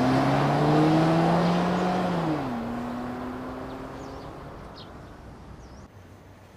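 A car engine pulling away, its pitch climbing as it accelerates, then dropping about two seconds in as the car passes. After that it fades away steadily.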